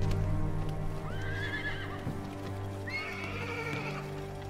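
Horses whinnying twice, a rising, quavering call about a second in and a second, longer one around three seconds in, over a low, steady music score.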